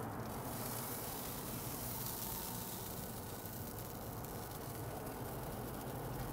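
A steady, fairly quiet hiss with a faint low hum underneath.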